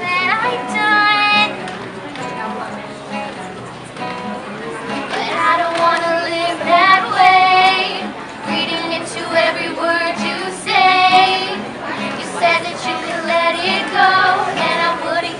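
Live acoustic performance of a pop song: an acoustic guitar strummed under young female voices singing together, with several long held notes.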